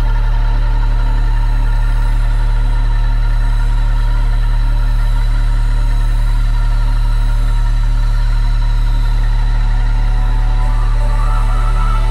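Dark ambient electronic music: a steady, deep drone under layered sustained tones, with a wavering higher tone coming in near the end.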